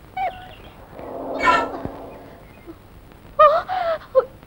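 Bird calls on a film soundtrack: a short call just after the start, a louder harsh call about a second and a half in, and another near the end.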